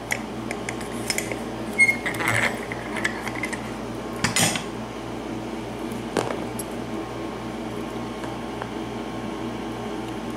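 Small metallic clicks and knocks from handling a brass pin-tumbler lock cylinder and steel picking tools, freshly picked open, with the sharpest click about four and a half seconds in. A steady low hum runs underneath.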